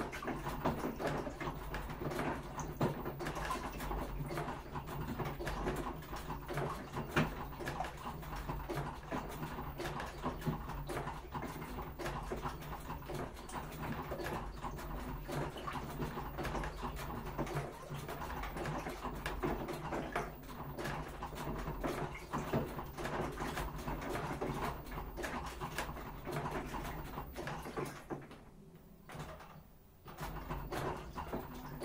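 Washing machine mid-cycle: the drum turns with wet laundry and water sloshing over a steady motor hum. It goes quieter for a moment near the end as the drum stops before turning again.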